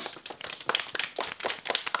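A small group of children applauding, many quick overlapping hand claps.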